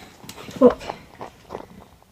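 A person saying "look", followed by a few faint small taps and rustles.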